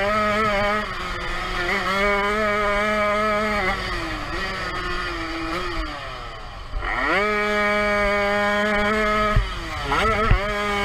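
Jawa 50 Pionýr's small single-cylinder two-stroke engine at high revs under racing throttle. The revs fall away for a couple of seconds around the middle as the throttle is closed, then climb sharply back up about seven seconds in and hold before dropping again near the end.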